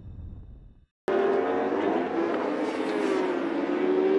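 A fading intro sound stops dead about a second in. After a brief silence, endurance racing superbikes at high revs cut in abruptly: a group of bikes passing, their engine notes holding a steady pitch that drifts slowly up and down.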